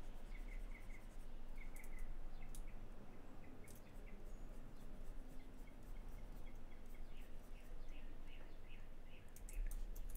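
Faint short chirps of a small bird, repeated throughout, over a steady low hum, with scattered light clicks.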